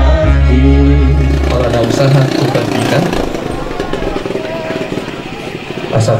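A congregation singing a hymn together over a sustained low accompaniment; the singing and the accompaniment stop about two seconds in, leaving a quieter mix of crowd noise and a man's voice.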